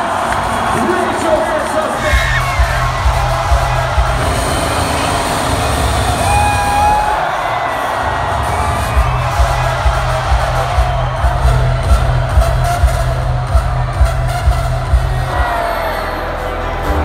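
Electronic dance music at club volume from a DJ's PA system, with a heavy kick drum and bass at about two beats a second, over a cheering crowd. The bass drops out briefly around seven seconds in and comes back a second or so later.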